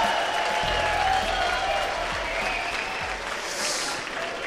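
A large seated audience applauding, the clapping slowly dying down.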